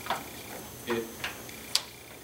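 A few short, separate clicks, the sharpest and loudest near the end, around a single brief spoken word.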